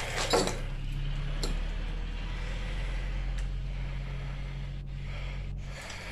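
Briggs & Stratton Intek 6.75 single-cylinder lawnmower engine, mounted on a go-kart frame, running steadily.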